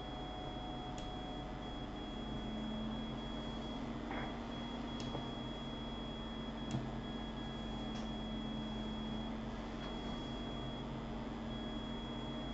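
Steady room tone of a computer recording setup: a constant low electrical hum with a thin high whine, broken by a few faint clicks.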